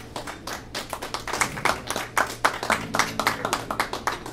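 Small audience applauding: a few people's separate hand claps, irregular and distinct rather than a full roar, starting just as the guitar's last notes die away.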